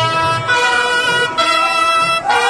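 An ensemble of brass horns playing a melody in long held notes, with the pitch shifting about half a second in and again just before the end.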